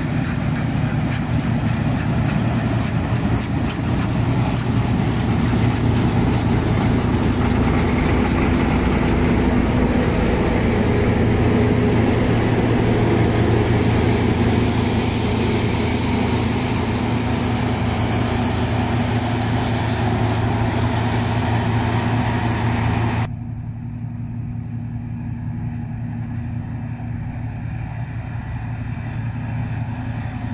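Claas Tucano 320 combine harvester running steadily while harvesting wheat: a loud engine drone with the noise of threshing and straw spreading. About 23 seconds in, the sound drops abruptly to a quieter, duller, more distant drone.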